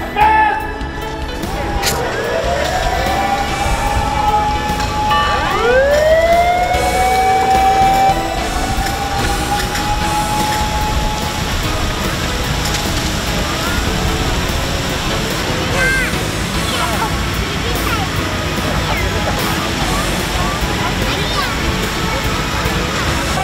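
Several fire engine sirens wind up one after another, each rising and then holding a long note, overlapping for about ten seconds before fading. A steady hiss of many fire hoses spraying water follows as the simultaneous water discharge runs.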